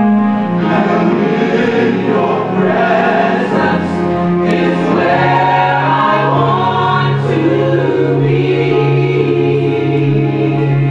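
Gospel choir song, the voices holding long, swelling notes over sustained low chords; the bass note shifts down about halfway through.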